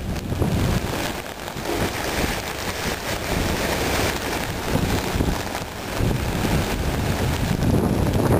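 Gusty wind buffeting the microphone over a steady hiss of rain, rising and falling in strength.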